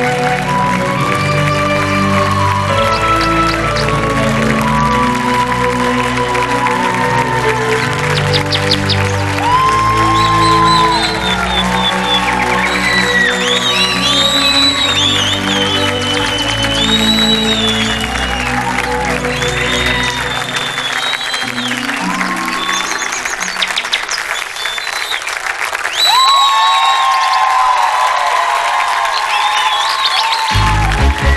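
Instrumental introduction played by a band, under live audience applause and high cheers. The low bass notes drop out about two-thirds of the way through, leaving the higher music and the crowd.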